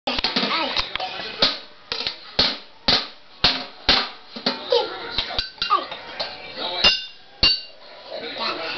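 A child beating a stick on makeshift drums of an upturned metal pot and plastic tubs, sharp strikes about twice a second; the last two strikes ring on with a metallic tone.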